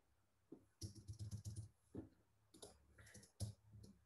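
Faint typing on a computer keyboard, in two short runs of quick keystrokes, the first about a second in and the second near the end.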